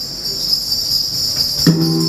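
Small metal bells jingling steadily, shaken in rhythm for a traditional Hegong dance, with a gong struck near the end that rings on in a low hum.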